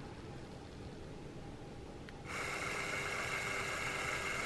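Cordless drill starts a little over two seconds in and runs with a steady whine, gently boring a small pin hole through the wall of a cow horn toward its wooden plug.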